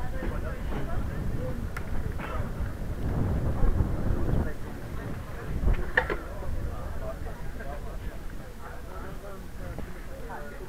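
Carbon recumbent trike rolling over brick paving, with a low rumble from the wheels that swells about three to four and a half seconds in, and a couple of sharp clicks, one about two seconds in and one about six seconds in. Background crowd chatter runs underneath.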